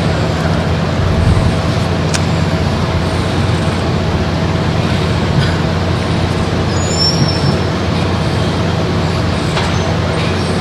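Steady low hum and noise from the hall or the recording chain, with no speech. A single faint click comes about two seconds in.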